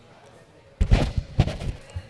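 A sudden run of loud knocks and thumps starting a little before the middle, several in quick succession.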